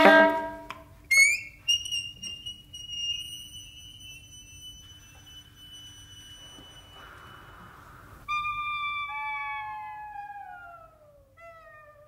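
Saxophone ensemble playing contemporary concert music. A loud chord dies away, a single note slides up and is held high and soft for several seconds, then several saxophones slide downward together in long falling glides that fade out near the end.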